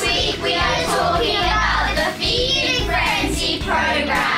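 A group of children singing together over background music with a steady bass line.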